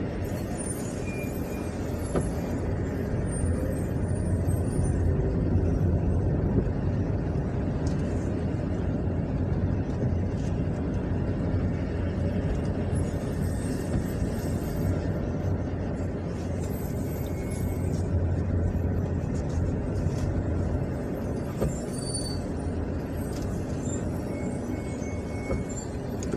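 A steady low rumble of engine and road noise inside a moving car's cabin as it drives along.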